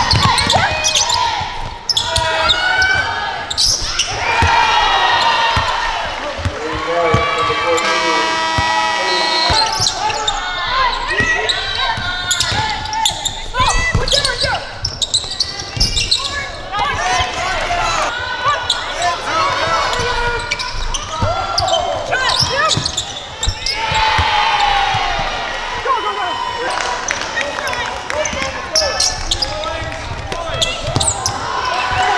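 Basketball game sound in a gym: a basketball bouncing on the hardwood court again and again, with players' voices calling out.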